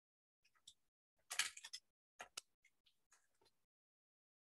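Short rustles and taps from handling felt strips and glue dots on a craft table, a handful of brief sounds with the loudest cluster about a second and a half in, then silence.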